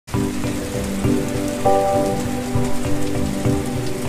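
Rain falling and splashing on water, with slow music of held notes changing every second or so underneath.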